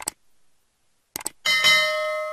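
Sound effects of a subscribe-button animation: two quick mouse clicks, two more about a second later, then a notification-bell chime that rings on and slowly fades.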